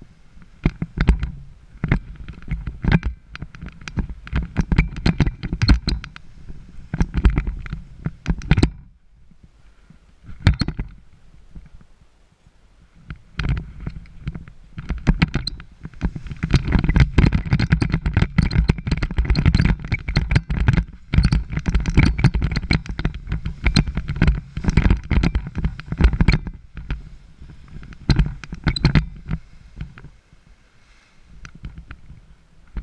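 Gusty wind buffeting an action camera's microphone: loud, uneven rumbling gusts with sudden peaks, easing off for a couple of seconds about a third of the way through. This is the wind that is lifting a paraglider canopy.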